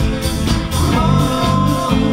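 Live rock band playing electric guitars, bass and drums, with a beat about twice a second. A held high note slides up a little about halfway through.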